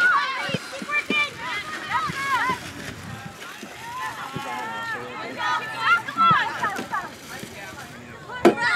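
Several young female voices calling and shouting during a soccer match, in short overlapping calls, with a few brief thumps among them.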